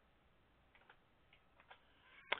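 Near silence with a few faint, short clicks of keys being pressed on a computer keyboard, clearing text from a search field.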